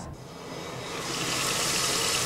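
Running water, a steady rush that swells over the first second and then holds.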